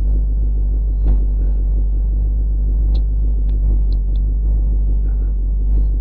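Steady, loud low hum, with a few faint mouse clicks about a second in and again between three and four seconds in.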